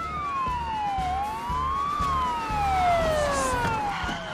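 Two police sirens wailing together, each sliding slowly up and down in pitch so that their tones cross, over a low traffic rumble.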